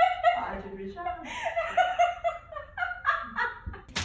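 A person laughing in short, high-pitched, cackling bursts with no words. A sharp click comes right at the end.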